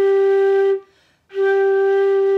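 Concert flute playing a long, steady G above middle C with a loose embouchure, giving its normal tone. The note stops just under a second in, and the same G starts again about half a second later.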